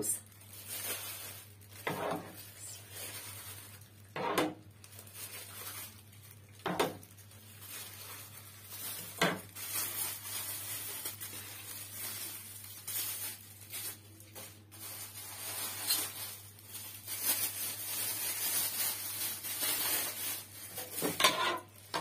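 A metal ladle knocking and scraping against a cooking pot as thick homemade tomato paste is scooped out, with a sharp knock about every two and a half seconds in the first half and softer, busier scraping and handling after.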